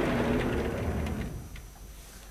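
Sliding chalkboard panel being pushed along its track: a rumbling slide with a few light ticks that dies away about one and a half seconds in.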